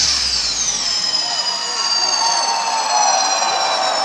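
A live dance-music set breaking down over a cheering, screaming crowd: the bass drops out about a second in while high synth tones sweep down in pitch and then hold.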